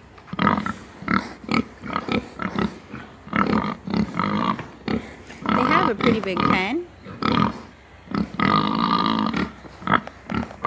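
Several market hogs grunting at close range in quick succession, with a longer squeal of wavering pitch about six seconds in and another drawn-out call near the end.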